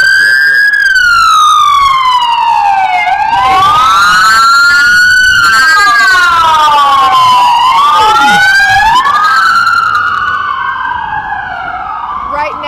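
At least two emergency-vehicle sirens wailing loudly together, each rising and falling in pitch over a few seconds and out of step with the other; they grow quieter near the end.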